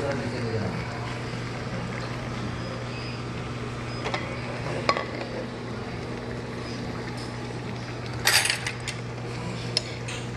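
Dishes and cutlery clinking now and then over a steady low hum, with a short burst of clatter about eight seconds in.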